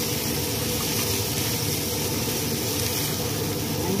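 Shredded chicken and vegetables sizzling steadily in a hot frying pan while being stirred with a plastic spatula.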